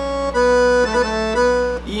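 Roland V-Accordion digital accordion playing a few held treble notes that step between C and B, each change marked by a brief dip in loudness.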